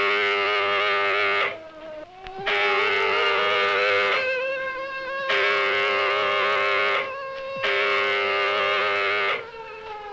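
Alert siren wailing, a buzzy tone that sags in pitch and winds back up, then holds steady. It drops out briefly about three times.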